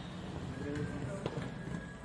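Indoor ambience of background music with indistinct voices, and a single sharp click about a second and a quarter in.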